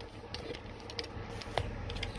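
Handling noise from a phone camera being picked up and moved: faint rubbing with scattered light clicks and taps, and a sharper tap about one and a half seconds in.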